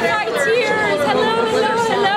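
A woman speaking in a put-on, exaggerated 'big voice', her pitch drawn out and gliding up and down, with bar chatter behind.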